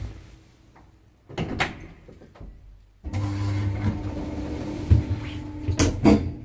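Automatic sliding doors of a 2002 Lift Katowice passenger lift closing: a steady motor hum sets in about three seconds in, with a couple of knocks near the end as the doors meet.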